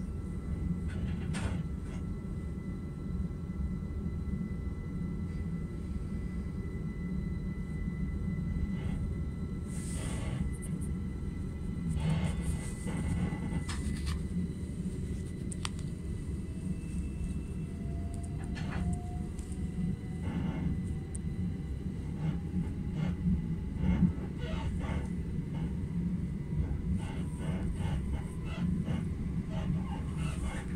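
Steady low rumble of an electric train's wheels on the track, heard inside the carriage, with occasional clicks and knocks. From about halfway through, a faint whine rises slowly as the train picks up speed.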